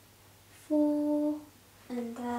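A voice humming one steady note for under a second. Another short voiced sound starts near the end.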